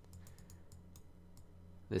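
Faint, irregular clicks and taps of a stylus on a pen tablet as handwriting is written, over a steady low electrical hum.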